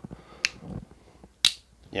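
Two sharp clicks about a second apart from Blackout Link aluminium handheld archery releases being tripped, the trigger letting the hook snap open, as two releases are compared for the same trigger feel.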